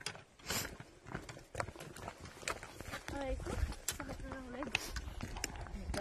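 Hikers' footsteps and trekking-pole taps on gravel and wooden stairs: irregular clicks and knocks, with a low rumble from about halfway through.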